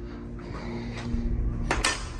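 A wall clock with a shattered glass face being handled and set down on a wooden table, clattering and clinking against loose glass shards near the end.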